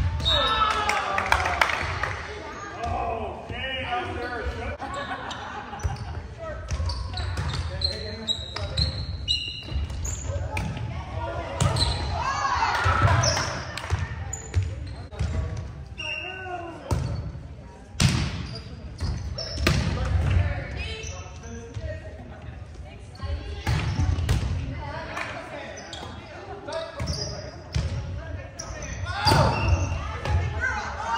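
Indoor volleyball rally sounds: sharp thuds of the ball being struck and bouncing on the hardwood gym floor at irregular moments, with players shouting and calling to each other, all echoing in the large hall.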